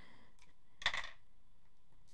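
A craft pick tool working at the paper backing of an adhesive dimensional on a die-cut cardstock piece: a faint tick, then a short scratch about a second in, over quiet room tone.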